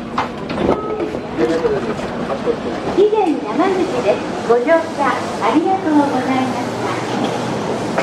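Voices on a station platform beside a stopped commuter train as passengers get off, with the train's running noise underneath.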